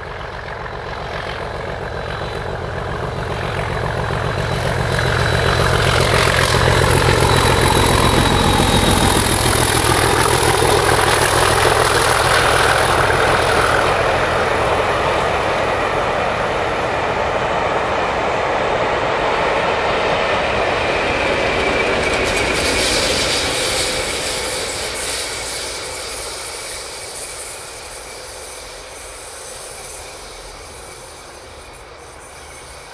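DRS Class 37 diesel locomotive (English Electric V12) working under load up a gradient with a train of coaches; the engine sound builds as it approaches, is loudest as it passes about a quarter of the way in, and the coaches then roll past before the sound fades away near the end.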